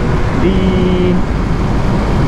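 Steady wind rush and road noise on a Yamaha R3 sport bike cruising at expressway speed, picked up by the rider's onboard mic, with the engine running evenly underneath. A single word, drawn out, is spoken about half a second in.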